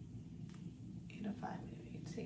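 A woman's voice, quiet and mumbled or half-whispered, with no clear words.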